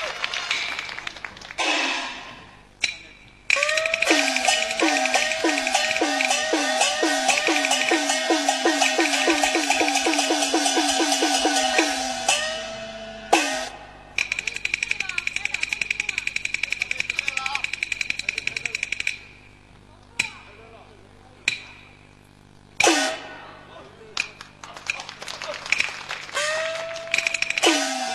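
Peking opera percussion of gongs and cymbals, struck in fast runs of several strokes a second. The runs break off and start again a few times.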